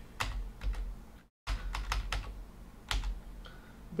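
Computer keyboard keys pressed one at a time, a few separate clicks about half a second to a second apart, over a steady low hum.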